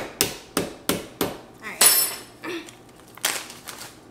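A small mallet striking a candy cane in a plastic zip bag on a countertop, crushing it into chunks: sharp knocks about three a second that stop a second and a half in, followed by a louder burst and a few scattered knocks.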